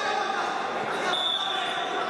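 Several people's voices overlapping in a large, echoing sports hall. A faint, steady high tone comes in about a second in.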